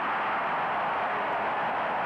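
Basketball arena crowd cheering, loud and steady, for a just-made jump shot.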